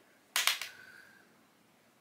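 A single sharp tap of the eyeshadow brush against the eyeshadow palette, followed by a brief faint ringing tone.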